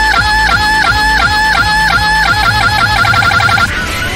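Electronic music: a high lead line repeats a short bouncing phrase over deep, falling bass hits about twice a second. About three seconds in it breaks into a fast stutter of repeated notes, then stops just before the end.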